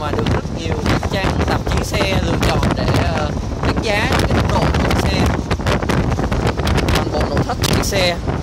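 Steady wind and road noise inside a Mercedes-Benz SLK 350's cabin at expressway speed, a deep rumble with wind buffeting the microphone. Bits of voice-like sound come and go over it.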